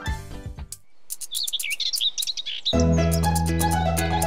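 Bird chirps over a faint hiss, the opening ambience of a cartoon song, then about two-thirds through a children's song intro starts with steady held bass notes and chords.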